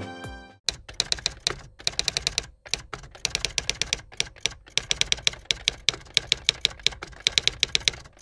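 Keyboard typing: rapid, irregular runs of key clicks at several strokes a second, following a short tail of music that ends in the first half second.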